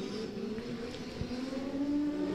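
Drift cars' engines running on the course, heard faintly, the engine note gliding in pitch and rising toward the end.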